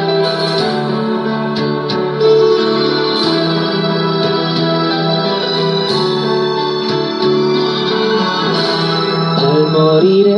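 Instrumental introduction of a slow romantic ballad's backing track, with steady held chords.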